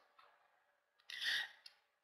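Near silence on a speaker's microphone, broken a little after a second in by one short intake of breath and a faint click.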